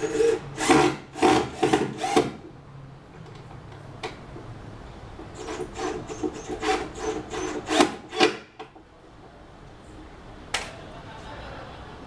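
Hand tool work against a plywood board while a mounting bracket is fixed to it: a quick run of short rasping strokes, a second run a few seconds later, and a single sharp click near the end.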